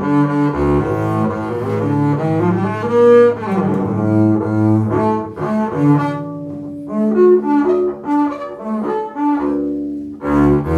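Hawkes & Son Panormo model double bass, converted to five strings, played with a bow: a phrase of long held notes that change pitch every second or so, mostly low.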